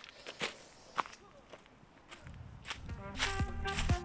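Footsteps on dry fallen leaves and mud, a handful of separate steps. A little past halfway, background music fades in and grows louder.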